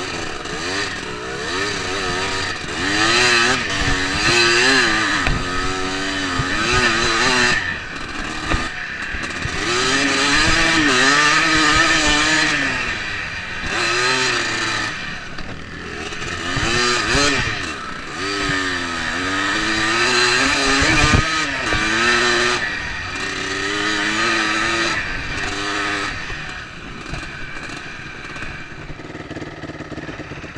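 Enduro dirt bike engine, heard up close from the bike, revving up and down again and again as it is ridden over rough off-road trail, its pitch rising and falling every second or two, with a few sharp knocks. Near the end it drops to a lower, steadier running.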